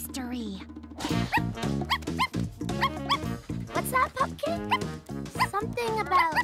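Cartoon puppy barking and yipping in a quick string of short calls, each rising in pitch, over background music.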